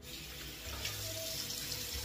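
Bathroom sink tap running steadily, water splashing into the basin.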